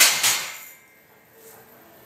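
Loaded barbell racked onto the steel J-hooks of a power rack at the end of a bench press set: a couple of quick metal clangs with the plates rattling, dying away within about half a second.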